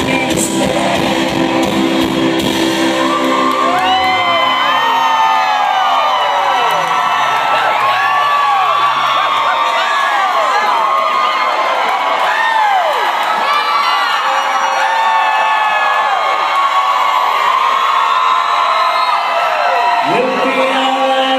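A live rock band playing, then dropping back after about four seconds while a concert audience cheers and whoops, many voices rising and falling over one another. The band's full sound comes back near the end.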